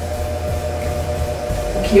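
Soft background music holding one steady sustained chord, with no melody or beat.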